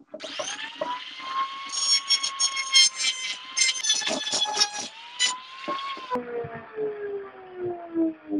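A handheld rotary tool with a conical grinding stone spins up to a steady high whine, then grinds a rivet head on a rusty steel blade with a harsh, scratchy rasp from about two seconds in to about five. About six seconds in the grinding stops and the whine falls slowly in pitch as the tool winds down.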